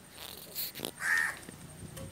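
A crow caws once, about a second in, over brief rustling as a cardboard box is handled.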